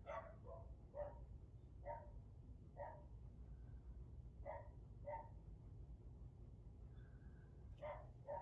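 Faint dog barking: about eight short barks at irregular intervals, over a low steady room hum.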